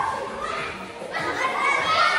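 A group of children's voices, talking and calling out, fading briefly about halfway through before picking up again.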